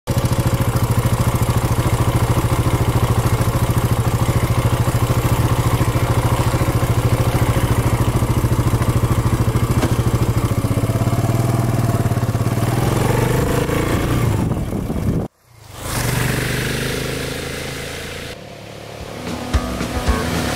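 KTM 690's single-cylinder engine running steadily with fast, even firing pulses, its revs rising a little after the middle. The sound cuts off abruptly about three quarters of the way through, and a quieter, fading engine sound follows.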